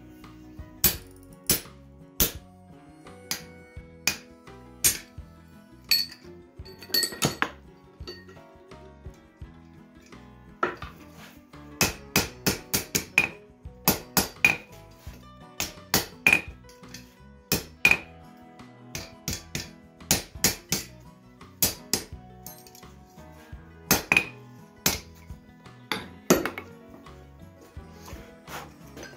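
Hand hammer blows on red-hot steel bar stock on an anvil, irregular strikes coming in quick runs, several with a ringing clang, while a tong jaw is forged. Background music plays underneath.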